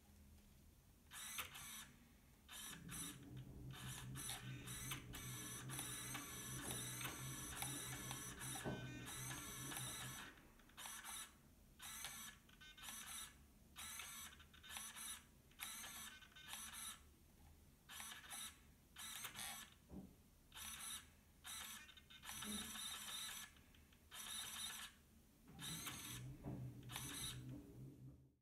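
KST X08 V5 micro servo whirring as it swings a long arm back and forth, a high motor-and-gear whine. The whine is nearly continuous for the first ten seconds, then comes in short separate bursts about once a second.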